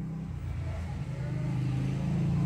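A steady low engine hum that grows gradually louder, like a motor vehicle running.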